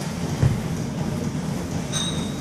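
A single dull thump as a body rocks back onto a padded gym mat, over a steady low rumble.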